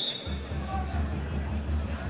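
Faint open-air football-ground ambience with a low, steady rumble underneath, starting about a quarter second in.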